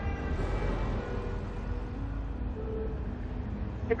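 A steady low rumble with faint held tones drifting slowly in pitch.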